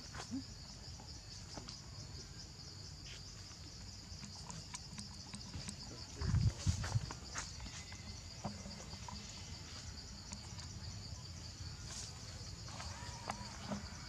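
Steady high-pitched chorus of insects, finely pulsing, with a cluster of loud low thumps about six seconds in and a few faint clicks.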